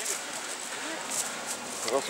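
Faint, indistinct voices of people talking over outdoor background noise.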